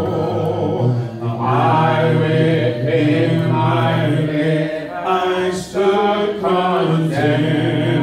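A church congregation singing a hymn a cappella, many voices together with low men's voices strong close by.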